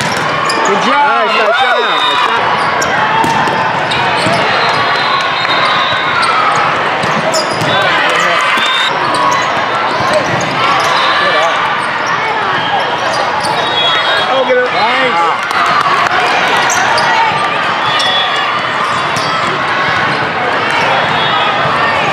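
Busy volleyball tournament hall: many voices from players and spectators across the courts, with volleyballs being struck and bouncing on the floor, echoing in the large hall.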